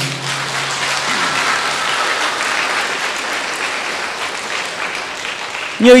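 Audience applauding in a steady round that lasts about six seconds and is cut short as speech resumes near the end.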